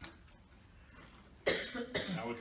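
A man coughing once, short and loud, into a handheld microphone about one and a half seconds in, after a quiet stretch; speech begins right after.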